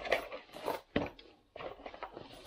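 Handling noise from unpacking a small security camera: rustling and light knocks of a cardboard box and plastic packaging, with a sharp click about a second in.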